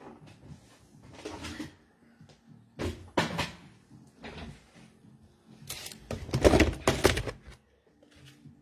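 Rummaging on a storage shelf: a few separate knocks and clatters of boxes being moved, then a longer, louder stretch of handling and rustling of plastic packaging near the end.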